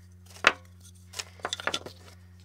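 Small wooden blocks being lifted and set down on a hard tabletop: one sharp knock about half a second in, then a quick cluster of lighter clicks and knocks near the end.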